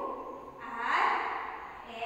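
A person's breathy voice in short utterances, each about a second long.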